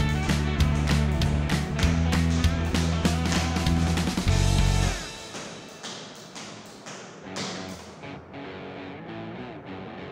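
Background music with a steady beat. About halfway through, the bass drops out and the music goes quieter.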